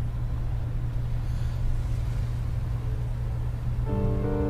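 Steady low rumble of a car's engine and road noise heard inside the cabin while driving. Music comes in right at the end.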